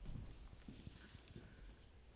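Faint footsteps of a few people walking across the floor, heard as soft, irregular thuds.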